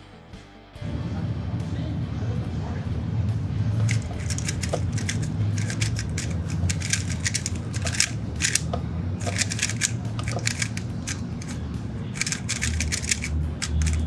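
Rapid plastic clacking of a MoYu HuaMeng YS3M MagLev 3x3 speedcube being turned fast in a timed solve. The clacking comes in bursts of quick turns with short pauses between them, starting a few seconds in.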